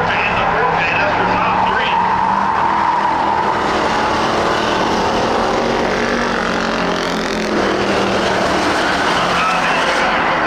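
Pack of Ford Crown Victoria V8 race cars running hard on a dirt oval, several engines at racing speed blending into one steady, loud drone as the field passes through the turn.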